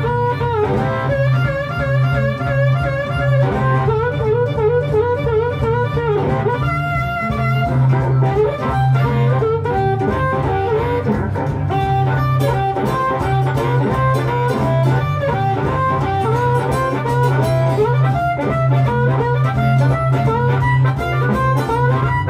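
Blues harmonica solo, the harp cupped in both hands, its notes bending and wavering, over a steady acoustic-electric guitar accompaniment.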